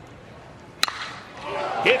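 A single sharp crack of a metal baseball bat hitting a pitch, a little under a second in, followed by crowd noise swelling.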